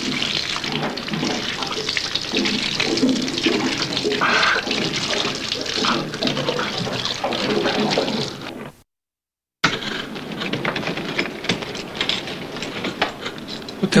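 Running water, a steady rushing noise that cuts out completely for under a second about nine seconds in, then carries on.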